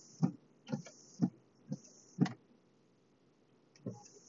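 Car windshield wipers sweeping across dry glass: a soft thunk at the end of each stroke about twice a second with a swish between, stopping a little past halfway through, then one more sweep starting near the end.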